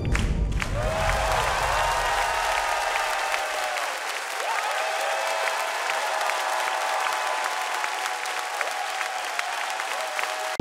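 Studio audience applauding and cheering, with whoops over the clapping; the last low note of the dance-pop backing track dies away in the first few seconds.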